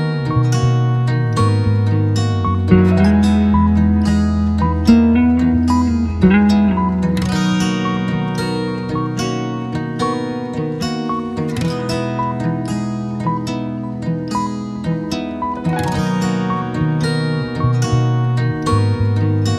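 Instrumental background music of plucked strings: quick picked notes over held low bass notes.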